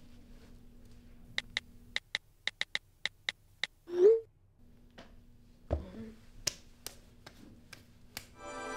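Smartphone keyboard clicks: about nine quick taps over two seconds as a message is typed. Then a short, louder sound about four seconds in. Later a soft thump and a few scattered taps.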